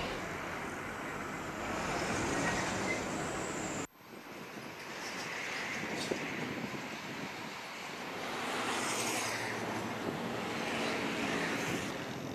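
Steady traffic noise from a slow-moving jam of cars and heavy trucks: an even hum of engines and road noise that cuts out abruptly about four seconds in and then resumes.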